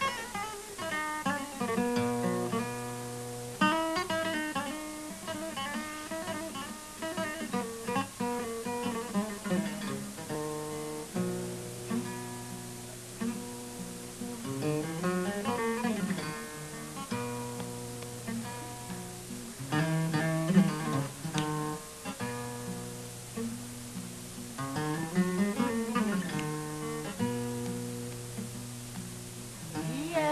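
Solo acoustic guitar fingerpicked in the kora style of Malian griot accompaniment: a repeating cycle of plucked phrases over steady bass notes, with a rising and falling run twice.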